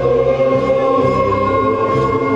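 Background music: sustained chords over a bass line that steps from note to note.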